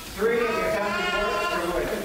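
A person's voice speaking, with drawn-out, wavering syllables.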